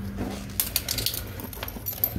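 Small metal bike tools, a folding multi-tool and a T-handle torque wrench, tipped out of a zipped pouch and clinking onto a wooden floor in several quick knocks.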